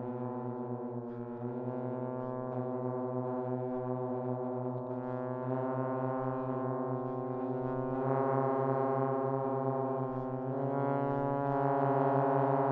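Three multi-tracked trombones holding long sustained chords that shift slowly from one to the next, swelling gradually louder through the passage.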